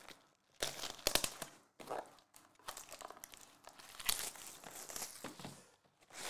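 Foil-wrapped trading card packs crinkling as they are handled by hand, in short irregular rustles.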